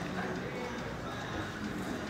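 Hoofbeats of a horse cantering on grass, with people talking in the background.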